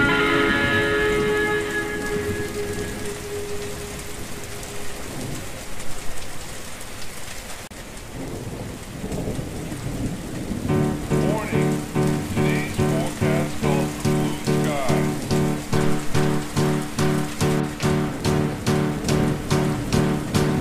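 Recorded steady rain under slowed, reverb-heavy music. One song's held chords fade out over the first few seconds, leaving mostly rain. About halfway through the next song begins with a repeated pulsing chord, about two a second.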